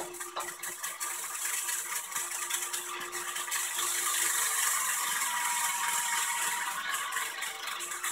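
Nintendo Ultra Machine toy pitching machine running: its battery motor and plastic gears rattle steadily, with a dense stream of small clicks, as it works its arm.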